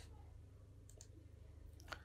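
Near silence with a low steady hum, broken by faint computer-mouse clicks: two close together about a second in and one a little louder near the end.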